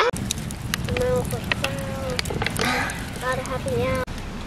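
Wood campfire crackling, with many sharp irregular pops over a low steady rush of burning. Faint children's voices are heard along with it.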